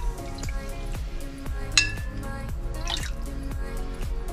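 Background music with a steady beat, over small splashes and drips of water as hands work a fish roe sac in a glass bowl of water. Two sharper splashes stand out, the louder about two seconds in.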